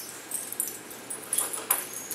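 A dog whimpering faintly, with a few light clicks.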